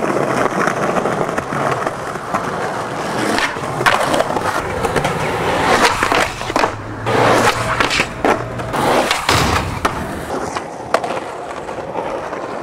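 Skateboard wheels rolling on concrete, with several sharp clacks from the board popping and landing.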